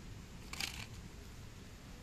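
A die-cast toy car set down among other toy cars in a plastic mesh basket: one brief clatter about half a second in, over a faint background.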